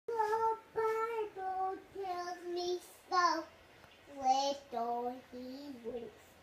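A young child singing a slow tune in a high voice, about ten held notes with short breaks between them and a pause about halfway through, the notes lower toward the end.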